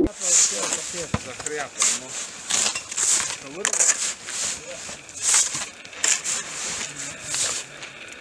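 Footsteps crunching in snow at a steady walking pace, about one step every two-thirds of a second.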